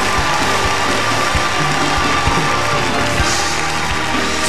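Church praise band playing upbeat music while a congregation cheers, shouts and claps in celebration.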